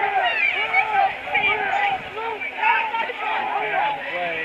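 Spectators at a football game talking and shouting over one another, a steady babble of many voices with no single voice standing out.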